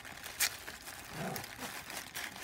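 Quiet rustling of tissue paper under fingers working at a sticker seal, with a sharp click about half a second in. Two pets scuffle and make animal noises in the background.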